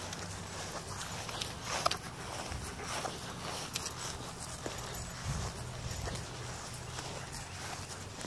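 Footsteps walking through grass, faint and irregular, with light rustling and a soft low thump about five seconds in.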